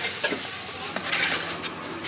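Meat and curry paste sizzling in a metal pot over a wood fire as they are stirred, with a few light knocks of the stirring utensil.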